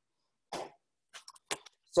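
A man's short cough about half a second in, followed by a few light clicks.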